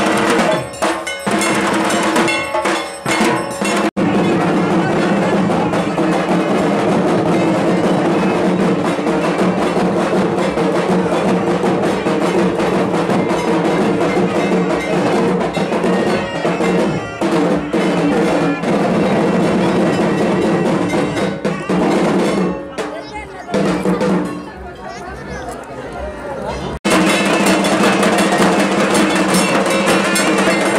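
Procession band playing loud festival music: drums beating under a brass horn's steady held notes, with crowd voices mixed in. The music drops to a quieter passage and then returns loud near the end.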